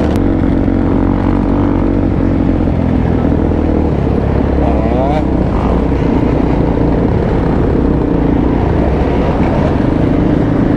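A Suzuki DR-Z400SM single-cylinder four-stroke engine running steadily at low road speed, with other dirt bikes and quads in the pack around it. Near the middle, an engine revs up and straight back down once.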